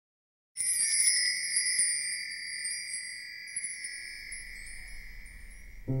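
A bright chime struck once about half a second in, ringing with a few clear high tones and a light shimmer of tinkles above them, then slowly fading away.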